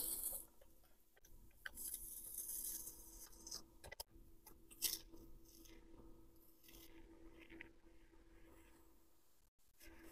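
Faint crackle of the clear plastic carrier sheet being peeled slowly off glitter heat transfer vinyl, in a few short stretches with a couple of small ticks, over a faint steady hum.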